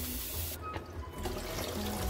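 Tap water running and splashing over shredded greens in a plastic salad-spinner basket in a steel sink. The flow cuts off about half a second in, leaving a few drips and splashes, with quiet music underneath.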